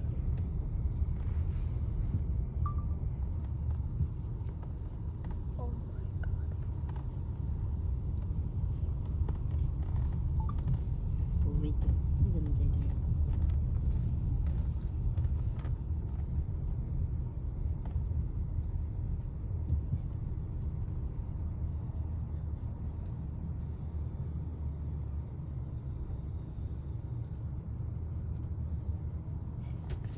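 Steady low rumble of a car driving, heard from inside its cabin.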